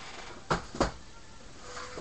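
Two sharp knocks about a third of a second apart as cardboard card-case boxes are moved and set down on a desk.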